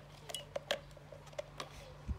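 Sharp plastic clicks and taps from handling a battery-powered toy elephant, a NiMH rechargeable battery being pressed into its battery compartment; about six separate clicks.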